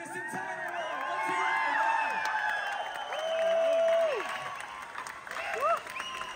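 Large audience cheering, whooping and applauding, many voices shouting over one another. There is a long held shout around the three-to-four-second mark.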